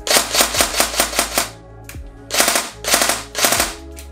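Tokyo Marui MP5A5 Next Gen recoil-shock electric airsoft gun dry-firing on full auto with no BBs, its gearbox and recoil-shock mechanism cycling in rapid clatters. There are three bursts: a long one of about a second and a half, then two short ones near the end.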